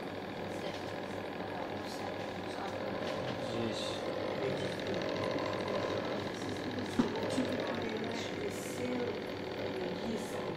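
Steady mechanical hum of running laboratory equipment, with a faint fast buzz in the middle and a single sharp click about seven seconds in.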